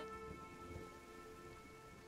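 Faint light rain falling, under soft held chords of background music.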